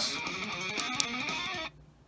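Guitar music playing through a small portable Bluetooth speaker, cutting off suddenly near the end as the play/pause button is pressed.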